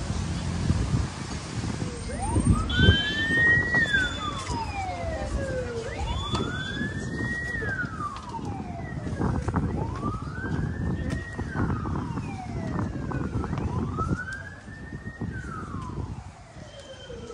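Emergency-vehicle siren wailing in slow rising and falling sweeps, each about four seconds long, starting about two seconds in. It fades a little near the end.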